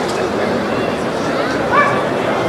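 Background talk of onlookers throughout, with one short, rising dog bark near the end.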